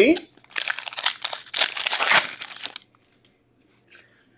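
Foil trading-card pack wrapper crinkling as it is handled and opened, for about two seconds, then going quiet.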